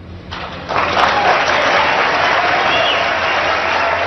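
Debate hall audience applauding loudly, swelling up within the first second.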